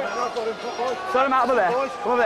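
Speech only: men talking without pause.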